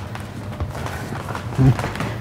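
Room noise with no clear event, and one short vocal sound near the end.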